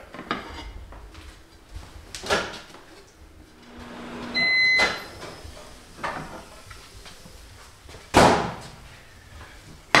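A microwave oven's short beep about four seconds in, just after a brief low hum, among several knocks from its door and a bowl being handled; the loudest knock comes about eight seconds in.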